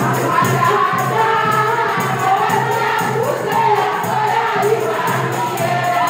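A chorus of women singing together over a steady percussion beat, with jingling strokes about three times a second.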